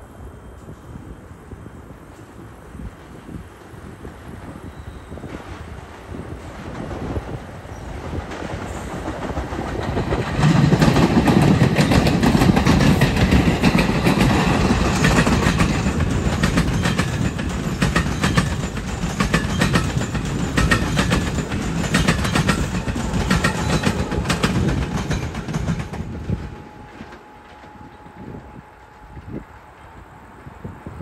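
A New Jersey Transit electric train of double-deck Multilevel coaches passes close by. The rumble builds as it approaches, is loud for about a quarter of a minute with the wheels clicking in a regular rhythm over the rail joints, then drops away suddenly near the end.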